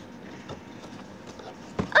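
Faint handling noise of a cardboard advent calendar as its door is opened and the contents taken out, with a soft tap about halfway through and a short, louder knock just before the end.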